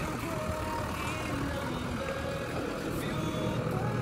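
JCB 3DX backhoe loader's diesel engine running steadily with a low rumble.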